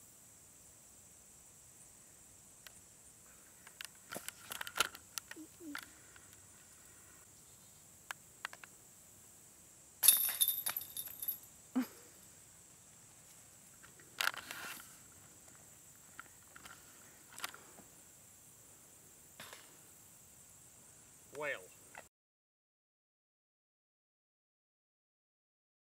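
A disc striking the chains of an old disc golf basket about ten seconds in: a sharp metallic clash followed by about a second of jingling chains. It is the loudest sound here. Scattered fainter knocks come before and after it, and a short vocal sound near the end.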